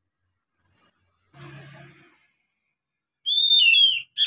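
Young oriental magpie-robin just beginning to sing: a short faint high note about a second in, then near the end a loud whistled phrase that falls in pitch at its close.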